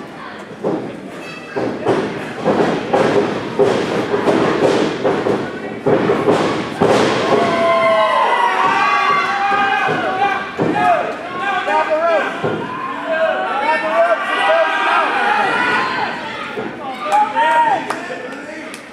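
Repeated thuds and slams of bodies hitting a wrestling ring's mat for the first several seconds, then many crowd voices shouting and yelling over one another, with a few more thuds near the end.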